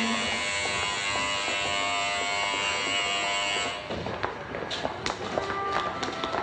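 Station electric bell ringing continuously, a dense metallic ring that cuts off suddenly about four seconds in. After it stops there are light clicks and taps.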